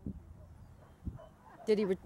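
A dog yipping briefly near the end, after a stretch of quiet field noise.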